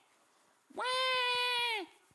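A man's voice imitating a child's whiny wail: one drawn-out, high "waah" held steady for about a second, dropping in pitch as it ends.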